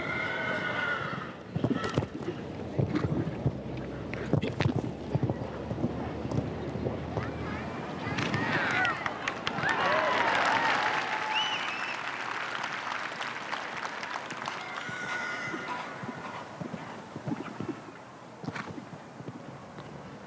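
A show-jumping horse cantering and jumping on grass turf, its hoofbeats thudding in sharp knocks early on, over a steady hum of crowd noise and background voices.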